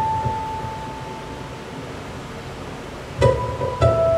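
A ukulele fingerpicked slowly: one high note rings and fades away into a near pause, then new plucked notes begin about three seconds in.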